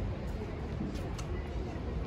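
Busy city street ambience: a steady low rumble with faint voices of passers-by talking.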